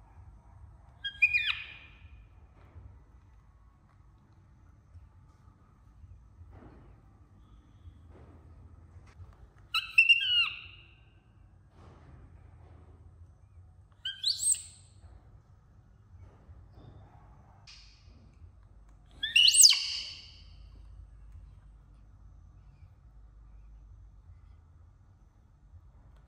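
Baby macaque giving short, high-pitched calls that fall in pitch, four of them a few seconds apart; the last, near the end, is the loudest.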